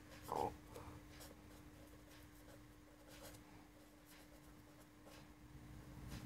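Faint scratching of a marker pen writing on paper in short, irregular strokes, over a steady low electrical hum.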